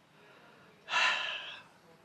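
A man's single breathy gasp about a second in, lasting about half a second and fading out.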